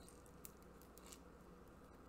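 Near silence: the faint crackle of a shaken bottle of sparkling water fizzing under a loosened cap, with a couple of tiny ticks.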